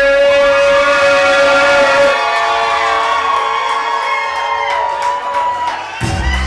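Live hip-hop show's music with no beat: long held electronic tones with many overtones, the bass dropping out about two seconds in.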